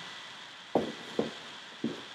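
Three soft knocks, about half a second apart: handling noise as a cardboard product box is picked up.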